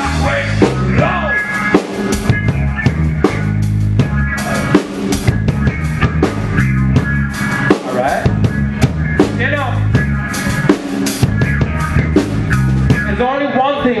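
Live band playing loud: a drum kit keeps a busy beat of kick and snare hits under bass and electric guitar, and a vocal line comes in near the end.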